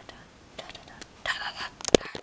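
A soft, whispered voice about a second in, followed by a few sharp clicks near the end.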